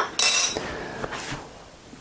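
A brief clink of kitchenware about a quarter second in, ringing briefly and then dying away.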